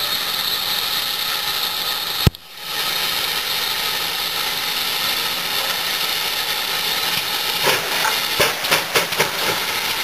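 GWR 5101 Class prairie tank steam locomotive moving slowly with a train, a steady steam hiss running throughout. There is a single sharp click about two seconds in, and a run of metallic clanks and knocks near the end.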